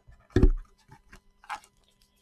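A single heavy thump about half a second in, followed by a few light clicks and a softer knock about a second later: objects being handled and knocked against a desk while someone rummages.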